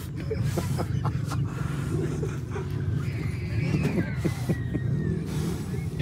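A boy blowing hard and repeatedly at a knot on a rope, heard as a steady low, windy rumble.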